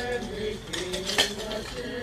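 Steel shovels scraping and striking into white stony rubble as a grave is filled in, with a sharp metallic clink near the start and a louder one just after a second in. Voices singing run underneath.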